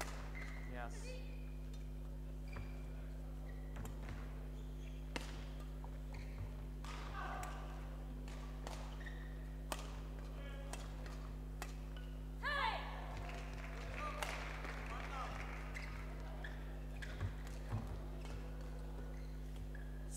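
Badminton doubles rally: sharp racket strikes on the shuttlecock, spaced a second or more apart, and short shoe squeaks on the court floor, the loudest about twelve seconds in, over a steady low electrical hum.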